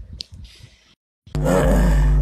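A man's short, throaty non-speech vocal sound into a clip-on microphone, loud and over a steady low electrical hum, starting about halfway through after a few faint clicks.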